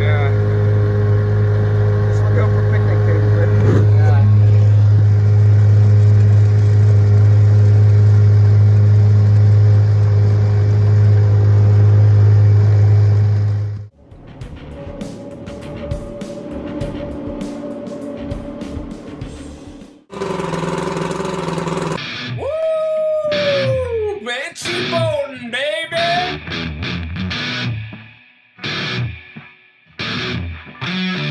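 Evinrude 9.9 hp two-stroke outboard motor running steadily under way with a freshly replaced water pump. The steady drone cuts off sharply about 14 seconds in, and music follows.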